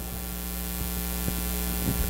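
Steady electrical mains hum in the audio equipment, a low buzz with a stack of even tones that stays level throughout.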